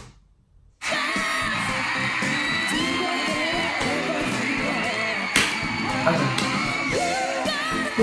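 Music starts abruptly about a second in: a young girl singing a pop song live with a band behind her, with one sharp hit about five seconds in.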